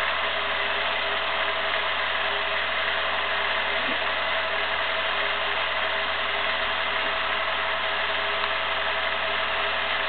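Film projector running: a steady mechanical whirr and clatter from its motor and film transport, with a steady hum under it.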